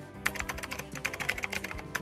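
Rapid computer-keyboard typing clicks, a quick run of keystrokes starting about a quarter second in, over soft background music.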